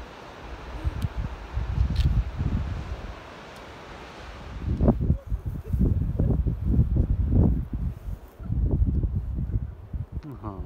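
Wind buffeting a phone's microphone in irregular gusts, a low rumble that comes and goes and grows stronger and choppier about halfway through.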